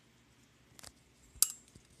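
Quiet handling noise from a carbon-fibre quadcopter frame being moved on a table: a soft click just before a second in, then a sharp clink about a second and a half in.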